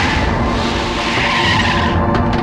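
A jeep skidding on a dirt surface as it brakes and pulls up, a loud scraping hiss of tyres that swells about a second in.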